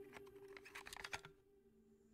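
Near silence: a faint, steady low drone of background music with a few faint clicks in the first second, then dead silence.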